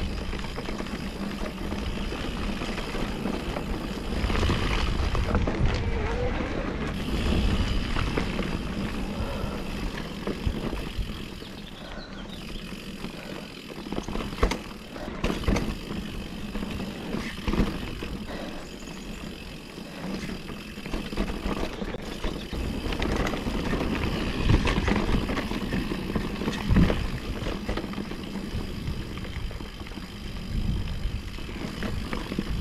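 Mountain bike riding down a dirt trail: tyre noise on the dirt, with scattered knocks and rattles from the bike over bumps, and wind rumbling on the handlebar camera's microphone.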